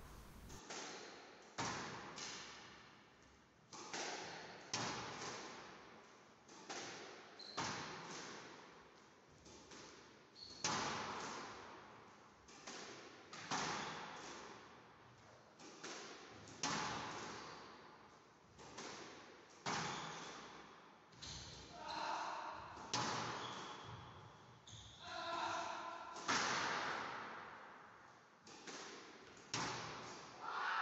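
A squash ball being hit by a racket and rebounding off the walls of a squash court in a continuous solo rally. It gives fairly quiet, sharp hits about once a second, often in close pairs, each echoing briefly in the enclosed court.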